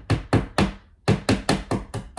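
A hammer tapping a nail into a wall: about ten quick, sharp strikes in two runs, with a short pause near the middle.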